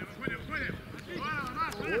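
Footballers shouting short calls to each other across an open grass pitch during an attack, with the low thuds of running feet, ending in a shout of "Davai!" ("Come on!").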